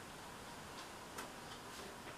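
Quiet room with the faint, light ticking of a small desk clock.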